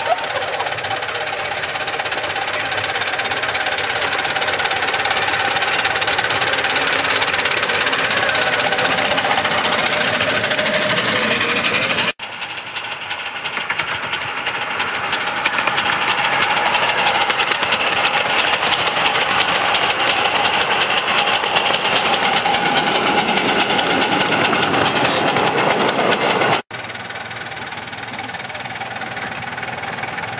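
Miniature ride-on steam locomotives running past on the track: the engines' exhaust and running gear make a loud, steady mechanical sound. It cuts off suddenly twice, at about twelve seconds and near the end, and starts again each time.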